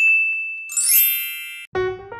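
Logo sting sound effect: a bright ding that rings and fades, then a rising, sparkly chime shimmer that cuts off suddenly. Piano music starts near the end.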